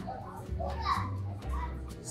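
Faint voices of other people, one sounding like a child, over soft background music and a low hum.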